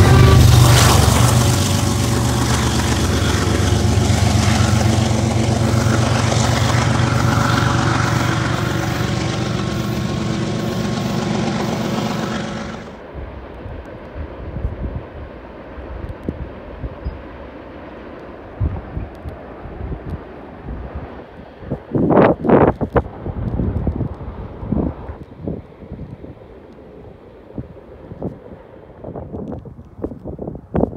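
BNSF freight train of covered hopper cars rolling past below, a steady rumble of wheels on rails that cuts off suddenly about thirteen seconds in. After that come quieter, uneven noises with a few louder bursts.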